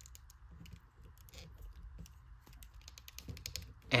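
Faint, irregular small clicks and rubbing from a plastic action figure being handled as its arm is turned at the shoulder joint, over a faint steady hiss.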